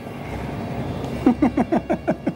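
A person laughing briefly: a quick run of short, falling 'ha' sounds starting about a second in, over a steady background hum.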